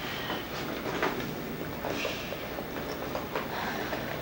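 A woman crying without words: irregular sobs and catching, breathy sniffles.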